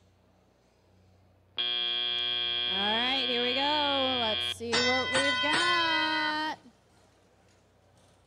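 An FRC field buzzer sounds for about three seconds as the autonomous period ends, with a wavering higher-pitched tone over its second half. A second electronic field sound with shifting tones follows at once for about two seconds, signalling the start of the teleoperated period.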